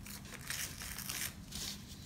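Paper being torn by hand: a longer rip about half a second in, then a shorter one near the end.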